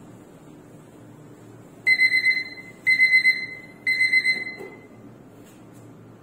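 Three electronic beeps, about a second apart, each a steady high tone that fades out.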